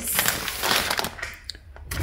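Paper takeaway bag rustling and crinkling as it is handled and opened, for about a second, then quieter.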